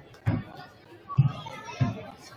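A basketball bouncing on a hardwood gym floor: three unevenly spaced thumps, over voices and children's chatter.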